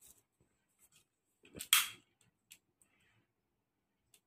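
Long-nosed piezo utility lighter sparking: one sharp snap a little under two seconds in, just after a smaller one, with a few faint clicks and handling sounds around them.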